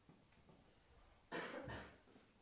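A cough about two-thirds of the way in, in two quick bursts, over faint room sound.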